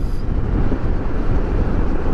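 Steady riding noise from a Kawasaki Versys 650 Tourer under way: wind rushing over the microphone, mixed with the bike's parallel-twin engine and tyre noise.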